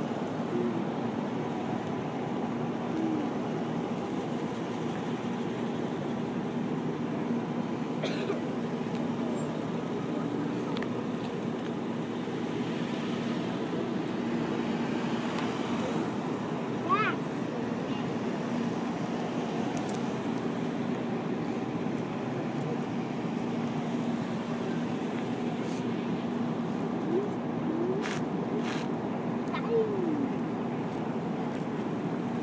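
A line of police cars and SUVs rolling slowly past one after another, a steady drone of engines and tyres, with a few faint voices of onlookers. A short sharp knock sounds about halfway through.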